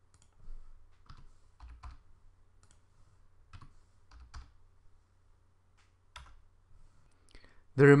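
Scattered computer keystrokes and mouse clicks, about a dozen short separate clicks at irregular intervals, over a faint low steady hum.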